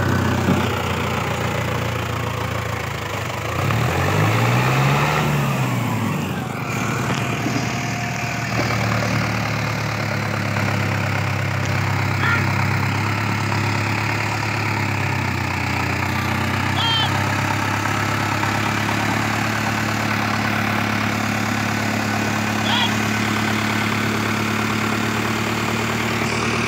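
Mahindra Arjun tractor's diesel engine labouring under load while hauling a heavily loaded sugarcane trailer, its front wheels lifting. It revs up and back down once a few seconds in, then holds a steady note.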